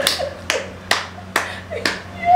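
Hand clapping: five sharp claps, about two a second.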